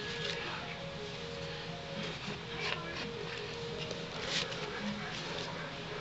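Faint background music with held tones, under a few light rustles and taps of paper and a paper coffee filter being handled.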